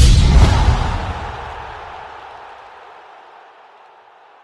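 Logo sting for an animated ESPN+ end card: a sudden deep booming hit with a whoosh that fades away over about three seconds.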